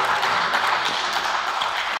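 Spectators clapping: steady, dense applause in a hall.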